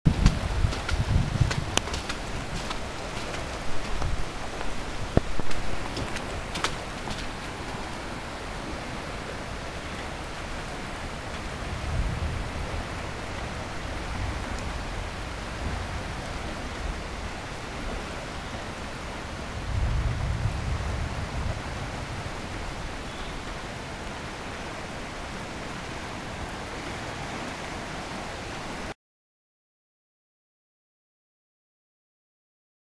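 Steady hiss of rain and rushing floodwater, with a few clicks and knocks in the first several seconds and brief low rumbles around 12 and 20 seconds in. The sound cuts off abruptly near the end.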